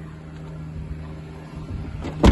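Steady low hum of the Ford Focus's 1.6 TDCi diesel engine idling.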